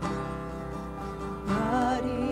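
Live worship band music: acoustic guitar and keyboard holding chords, with a woman's singing voice coming in about one and a half seconds in.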